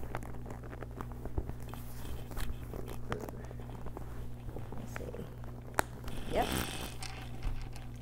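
Hands pressing and working the flap of an over-stuffed quilted leather shoulder bag closed: soft rustling and many small clicks, with one sharp click just before six seconds in. A steady low hum runs underneath.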